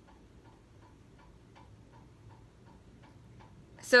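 Faint, steady, fast ticking, about four ticks a second.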